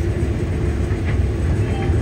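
Combine harvester running steadily while cutting corn, heard from inside the cab: a constant low engine and threshing rumble with a steady hum.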